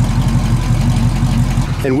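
1966 Ford Mustang's 289 V8 idling steadily through its dual exhaust, a low, evenly pulsing sound that drops away near the end.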